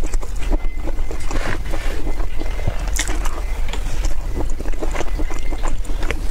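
Close-miked chewing of a mouthful of stewed curry, with wet mouth sounds and many small clicks, over a steady low rumble.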